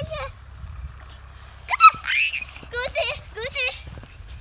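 High-pitched cries: a sharp rising squeal just before two seconds in, then a run of short, wavering high calls.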